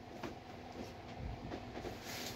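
Faint rustling and soft ticks of a quilted synthetic jacket being handled, lifted and laid flat on a table, over a faint steady hum.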